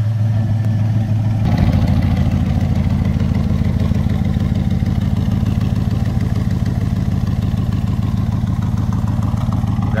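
GM LS7 V8 idling steadily through side exhaust pipes, a low rumble that grows fuller and louder about a second and a half in.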